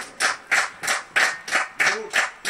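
Audience clapping together in a steady rhythm, about three claps a second, the kind of clapping that calls for an encore.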